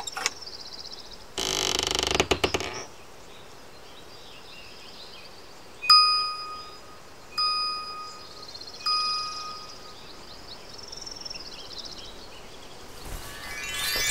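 Three clear bell-like dings, each fading out, about a second and a half apart near the middle, over a faint high wavering chirr. A short noisy burst comes first, and a rising shimmering glissando starts near the end.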